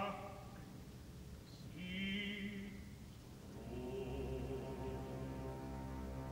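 Live opera recording: a solo voice sings two short phrases with vibrato over soft held low orchestral notes, and about three and a half seconds in the orchestra swells into a sustained chord.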